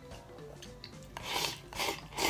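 A person slurping food from a bowl held to the mouth: two short, noisy slurps in the second half.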